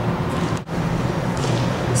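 A steady low hum with background hiss, broken by a momentary dropout a little over half a second in.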